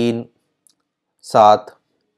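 A man's voice in two short utterances, one right at the start and a louder one about a second and a half in, with near silence between them and a faint click.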